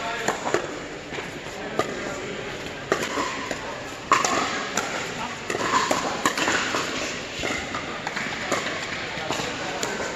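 Pickleball paddles striking a plastic ball in short, sharp pops at an irregular pace, from the rally on the near court and from games on the neighbouring courts, amid voices in a large indoor hall.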